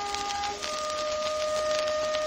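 Orchestral accompaniment holding sustained chords, shifting to a new chord about half a second in, played back from a 78 rpm shellac record. The disc's surface crackle and hiss run underneath.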